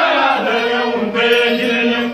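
A group of Dinka men singing a traditional chant together in sustained, drawn-out phrases, with a short breath break just after one second.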